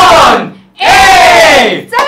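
A small group of people shouting together in unison, two loud drawn-out cries, each falling in pitch; the first ends about half a second in.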